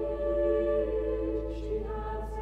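Choir singing sustained chords with pipe organ accompaniment. A very deep organ pedal note comes in at the start and holds underneath while the upper voices move to a new chord about a second in.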